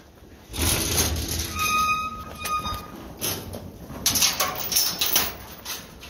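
A mob of sheep moving in a rush across a dirt yard floor, hooves trampling, with knocks and a brief squeaky tone lasting about a second, from about half a second in.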